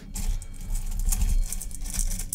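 Irregular crackling patter with dull low thumps, from something being handled close to the microphone.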